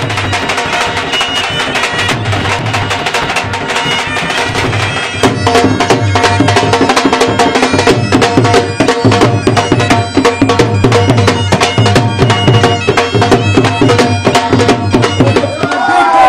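Bagpipes playing a tune over rapid drumming on two Punjabi dhol drums, with steady held pipe notes under dense, driving drum strokes. The drumming gets louder about five seconds in.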